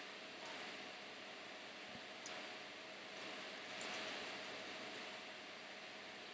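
Faint steady hiss of room noise, with two small clicks, one a little after two seconds in and one near four seconds.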